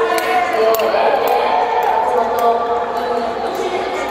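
Voices calling out in a large, echoing indoor hall, some held long, with repeated sharp clicks over them.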